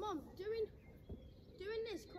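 A person's voice making three short vocal sounds, no clear words.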